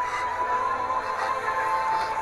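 Film score music: one long held high note over a soft background wash.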